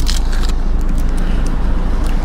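A vehicle engine running, heard as a steady low rumble.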